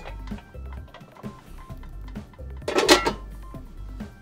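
Background music with a steady beat. About three seconds in comes a short, loud metallic clatter as an aluminium pot lid is lifted off and set down.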